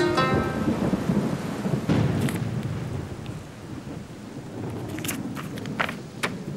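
Thunder rumbling over steady rain, swelling again about two seconds in and then fading.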